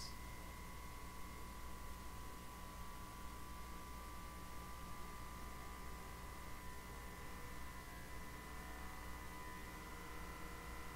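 The built-in air pump of a Fieldpiece SDMN6 manometer running, a faint steady whine over a low hum, as it is stepped up to raise the pressure on a furnace pressure switch.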